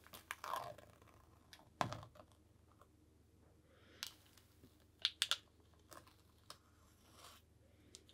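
Faint, scattered ticks and soft crinkles of a stencil being peeled off wet, tacky acrylic paint on canvas, coming in a few separate small bursts.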